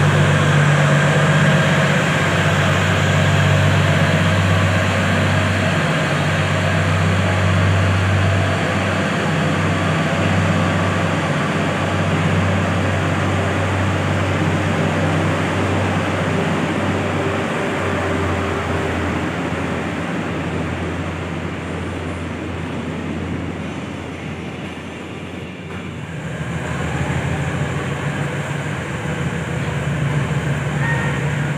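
Airport train pulling out along the platform: a steady low hum of the train running with rail noise, fading about three-quarters of the way through. The train sound rises again near the end.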